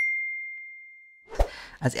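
A single bright ding, a bell-like chime sound effect struck once and ringing out on one clear tone that fades away over about a second and a half.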